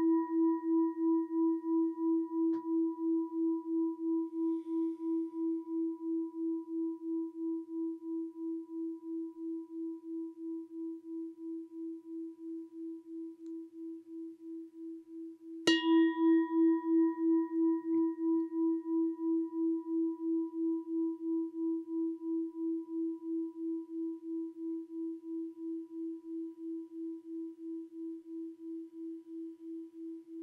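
Singing bowl ringing with a steady wavering pulse and slowly fading, then struck again about 16 seconds in and ringing out the same way; its chimes mark the end of the meditation.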